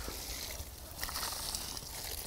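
Water poured from a plastic tub onto dry, compacted soil in a raised bed, a steady pour that grows a little louder after about a second.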